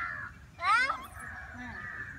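A crow caws once, about half a second in: a short, harsh call rising in pitch. A faint steady high tone runs behind it.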